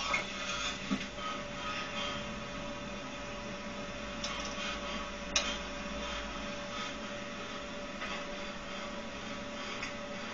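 Steady hum and hiss with a few faint short clicks, the sharpest about five seconds in.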